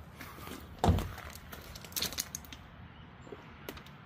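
A single dull thump about a second in, followed by a few light clicks and taps, as the cocked cannon of a 1961 Deluxe Topper Tiger Joe toy tank fires a plastic shell.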